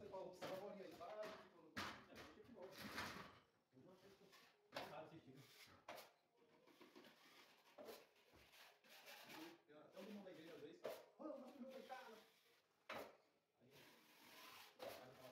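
Steel trowel scraping and knocking against a hawk and drywall as joint compound is loaded and spread, a short sharp scrape every second or two, under faint, indistinct talking.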